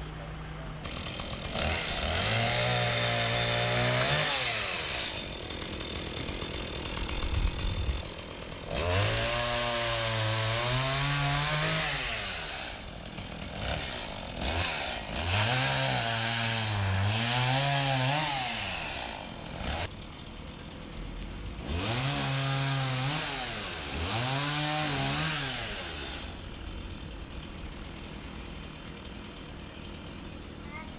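Chainsaw cutting up a fallen tree, revved up and down in several spells of a few seconds each, its pitch rising and falling with every cut, with quieter lulls between.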